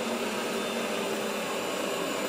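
Shark robot vacuum running on carpet: a steady whir with a faint low hum, unchanging throughout.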